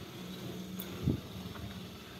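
Quiet outdoor background: a faint, steady low hum, with one soft thump about a second in.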